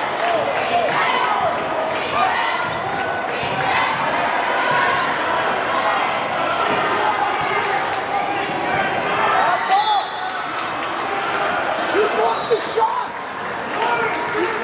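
Basketball bouncing on a hardwood gym floor during play, with a few sharper thuds near the end. Voices of players and spectators echo through a large hall.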